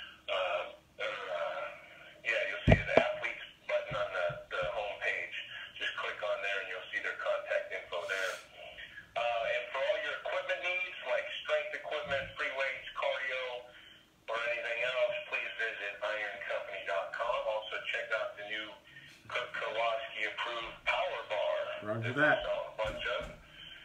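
A voice over background music, with a single sharp thump about three seconds in.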